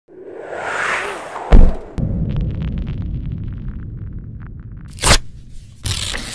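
Logo intro sound design: a rising whoosh, then a loud sharp hit about a second and a half in. A low rumble follows, overlaid with a run of short scratchy ticks. Two quick swishes come near the end.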